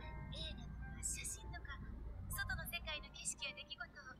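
Faint, muffled anime dialogue, a woman's voice speaking in Japanese, over soft background music.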